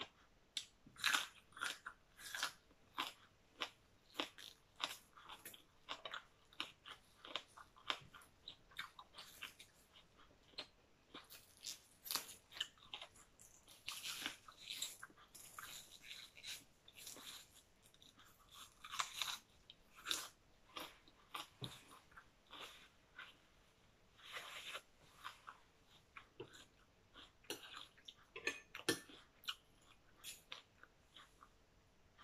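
A person chewing and crunching food close to the microphone: many short, sharp crunches in quick succession, with brief pauses between mouthfuls.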